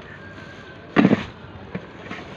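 A quick cluster of hard plastic knocks about a second in, over steady background noise. It is the helmet with its cased action camera being handled on the plastic top box.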